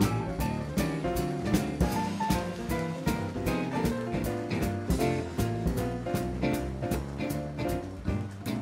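Jazz combo playing an instrumental swing passage without vocals, the drum kit keeping a steady beat under the melody and bass.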